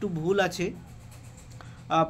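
A person's voice speaking Bengali for a short phrase, a pause of about a second, then speech resuming near the end.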